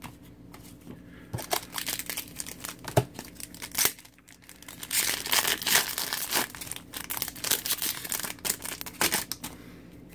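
Foil wrapper of an Upper Deck Champs hockey card pack being torn open and crinkled by hand. Irregular crackling and tearing starts about a second in and is loudest and densest in the second half.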